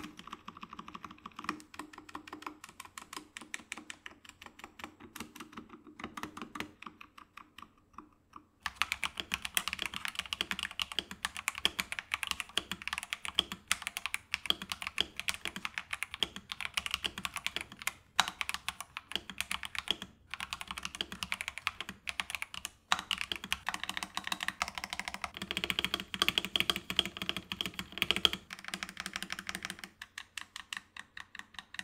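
Typing on mechanical keyboards: first an Epomaker TH66 with Gateron Pro Yellow linear switches, quieter and softer. About nine seconds in, it cuts to an Epomaker TH68 with Epomaker Sea Salt switches, whose keystrokes are louder and higher-pitched, in a steady run of clacks with brief pauses.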